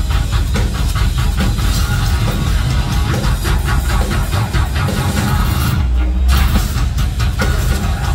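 Heavy metal band playing live at full volume through a club PA: distorted electric guitars, bass and drums. About six seconds in, the guitars and drums drop out briefly, leaving a low bass note, before the full band comes back in.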